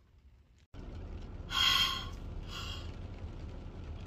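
A woman breathing out heavily twice, a long loud gasping breath and then a shorter one, over a steady low car-cabin rumble. She is short of breath after wearing a face mask.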